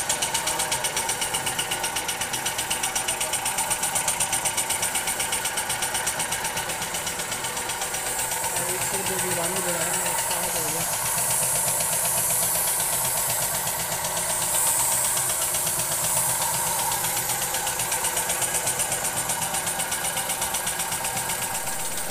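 Air compressor running steadily with a fast, even pulsing chug, feeding a spray paint gun whose high hiss comes in about eight seconds in and fades out near seventeen seconds as paint is sprayed onto a steel gate.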